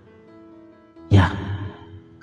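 Soft background music of sustained, held notes under a voice-over. About a second in, a man's voice speaks a single word over it.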